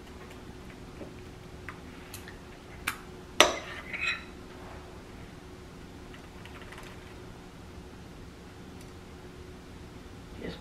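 A few light clicks and clinks of a metal spoon against foil tart tins as cheesecake filling is pressed and dropped into the mini crusts, the sharpest about three and a half seconds in, over a quiet room background.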